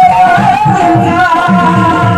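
Live ghazal singing: a man's voice holding one long note with a slight waver, over a steady hand-drum rhythm.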